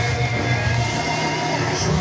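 Loud, steady stadium din: crowd noise with cheer music in the background.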